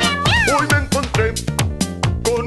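Upbeat children's cartoon music with a steady beat, with a cartoon cat's meow rising and falling about a third of a second in.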